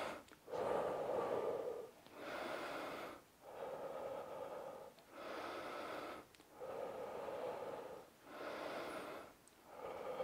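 A man breathing slowly and deeply, about six long breath sounds of a second or so each with short pauses between: controlled recovery breathing after exercise.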